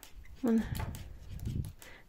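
A short low voiced murmur about half a second in, then a soft low rumble of hand and yarn handling, with a few faint clicks from metal circular knitting needles as stitches are worked.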